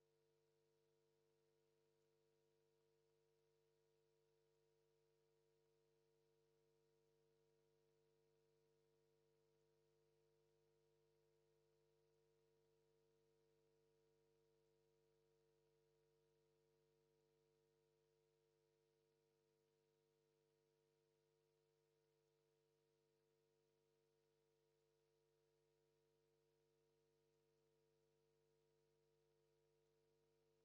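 Near silence: only a very faint, steady hum with no other sound.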